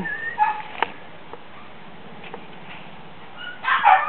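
Shorkie puppies yipping a few times, then a quieter stretch, then a burst of louder high yips near the end.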